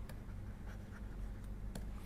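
Stylus writing on a tablet-PC screen: faint, light ticks and scratches as a handwritten word is inked, over a low steady hum.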